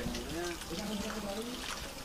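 A person's voice speaking quietly, with a drawn-out syllable about halfway through.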